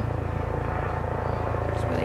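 Steady low rumble of distant vehicle noise, with no other sound standing out.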